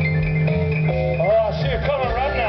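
Live blues band playing, with a plucked upright double bass under sustained instrument notes. A wavering voice-like lead line comes in a little over a second in.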